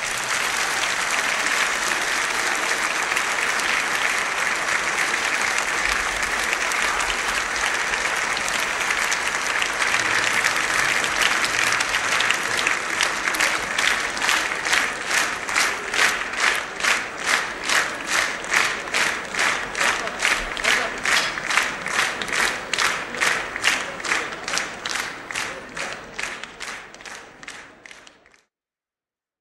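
Large audience applauding. About halfway through, the clapping falls into a unison rhythm of roughly two claps a second, then fades out near the end.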